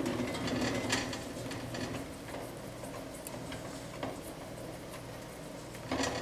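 Wire whisk scraping and clicking against a stainless steel saucepan as flour is stirred into melted butter to make a roux, in quick irregular strokes.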